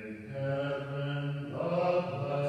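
A man's voice chanting slowly, each note held long and steady, stepping to a new note about half a second in and again near the end.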